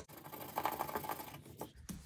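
Hands working paper at close range: a light, fast scratching and rustling for about a second and a half, then a brief tap near the end.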